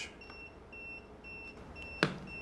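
A Far Driver motor controller beeping: short, faint, high beeps about twice a second. It is an alarm because the controller is not yet configured, which the owner takes for probably over-voltage protection.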